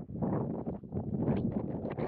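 Wind gusting across the camera's microphone: a rough, rushing noise that starts suddenly and fades out just after two seconds.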